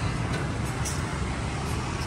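Steady low hum of city street traffic, with a brief faint high-pitched sound about a second in.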